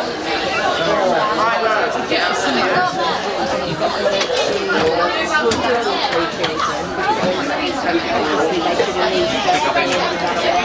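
Several people chattering at once, overlapping voices with no clear words, continuing without a break.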